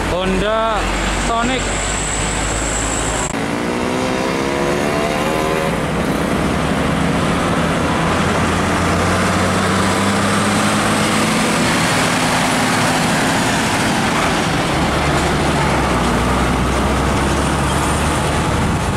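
Heavy diesel trucks driving past, one engine revving up with rising pitch about four seconds in, followed by the steady engine and tyre noise of a large truck and trailer going by.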